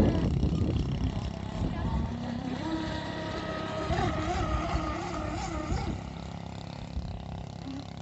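Radio-controlled fiberglass catamaran's motor running at speed across the water: a whine that wavers up and down in pitch from about two seconds in and drops away about six seconds in.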